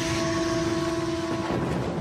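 A steady rushing rumble, the sound effect for a comet plunging into Earth, under a single held musical note that stops about three-quarters of the way through.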